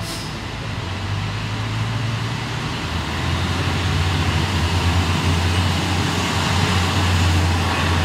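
Car engine and road noise heard from inside the cabin while driving, a steady low drone that grows louder about three seconds in.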